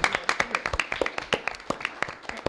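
A small audience clapping: scattered hand claps that thin out and grow quieter over about two seconds as the applause dies down.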